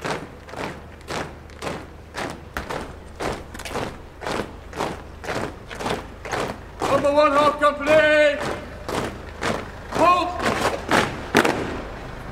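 A column of soldiers' boots striking the road in step at quick march, a sharp thud about twice a second. Long drawn-out shouted words of command cut in about seven seconds in and again about ten seconds in.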